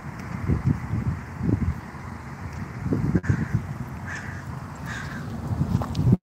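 Wind buffeting a phone's microphone in uneven gusts as it is carried along on foot, with handling noise. A few brief, fainter higher-pitched sounds come partway through.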